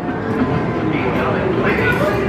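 Busy arcade background din: a steady mix of people talking and game machines.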